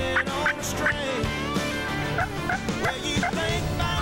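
Wild turkey gobbling repeatedly over the backing music of a song.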